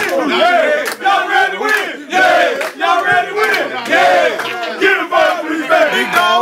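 A group of men shouting and chanting together in a tight huddle, a team hyping itself up, with sharp smacks roughly once a second.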